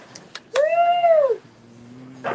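A short, high-pitched, meow-like vocal sound from a person, rising then falling in pitch over about a second, after a few light clicks.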